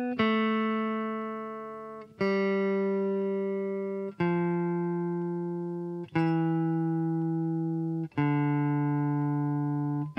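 Fender Telecaster electric guitar playing the C major scale descending in first position: five single picked notes, B, A, G, F and E, each left to ring for about two seconds before the next, lower one.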